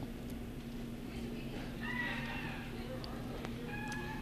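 Quiet room tone with a steady low hum and faint, distant voices around the middle and near the end.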